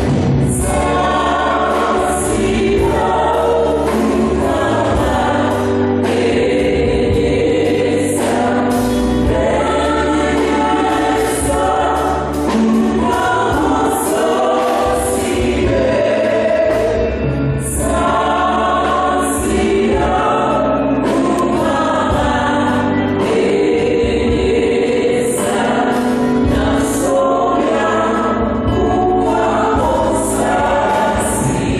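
Church choir singing a hymn with instrumental accompaniment.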